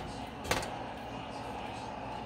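A single sharp knock of cookware about half a second in, as a nonstick skillet is emptied over a pot, then low steady kitchen background noise.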